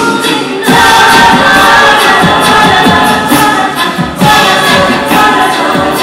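A group of women singing a cappella in harmony into stage microphones. The sound fills out and gets louder about half a second in.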